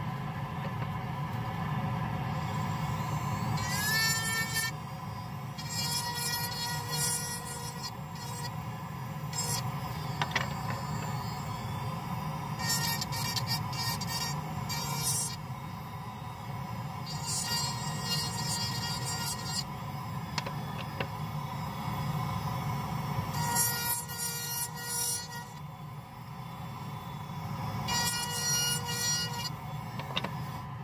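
Dental lab sandblaster firing abrasive grit from a hand-held nozzle at a 3D-printed dental model to strip the brackets off. It comes in about seven hissing bursts of one to two seconds each over a steady low hum.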